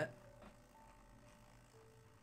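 Faint, steady hum of a Hornby Castle Class model locomotive's small electric motor running slowly on a rolling road. The mechanism is a little stiff, which the owner puts down to dried weathering paint.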